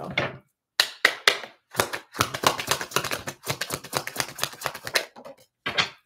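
A deck of oracle cards shuffled by hand: a rapid, uneven run of papery card clicks and flicks. It starts about a second in and breaks off briefly near the end.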